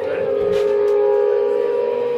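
Electric guitar holding a steady, ringing tone through its amplifier, with people talking underneath.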